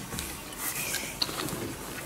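Quiet eating sounds: chewing and fingers tearing at a grilled chicken leg, with a few faint ticks.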